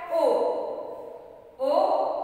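A woman's voice drawing out single syllables, as when calling out Hindi vowel letters to a class. The first syllable falls in pitch over more than a second, and another starts near the end.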